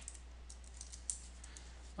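Computer keyboard being typed on: a scatter of faint, quick keystrokes.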